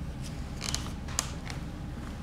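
A handful of short clicks and knocks from items being handled at a kitchen cupboard, the sharpest about a second in, over a low steady hum.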